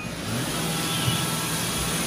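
Robot vacuum cleaner running with a steady whir, weighed down by a toddler sitting on top of it, a load too heavy for it to move well.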